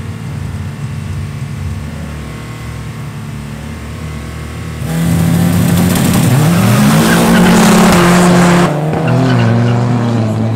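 Two drag-racing cars, a Subaru Impreza WRX turbo and a VW Golf 1.9 TDI diesel, run at the start line and then launch about five seconds in. The sound jumps to a loud rush with the engines climbing in pitch as they accelerate hard, then drops suddenly to a lower pitch near the end.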